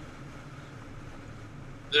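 Steady low rumble of road and wind noise from a Ram 2500 pickup towing an enclosed car trailer at highway speed.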